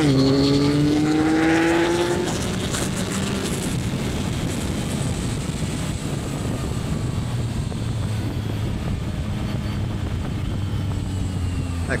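Yamaha MT-09 Y-AMT's 890 cc three-cylinder engine pulling hard, its note rising steadily for about two seconds. After that it settles into a lower, steadier note under wind rush.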